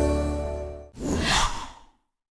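The held chord of an intro jingle fading out, then a short swoosh sound effect about a second in that sweeps downward in pitch and dies away.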